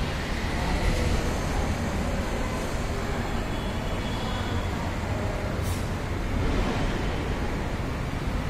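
Steady low rumbling background noise with a hiss on top and a single faint click near the end.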